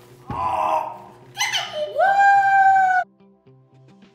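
A pumpkin thumps down on a table, then a toddler lets out one long, loud, high-pitched squeal that cuts off suddenly. Soft background music follows near the end.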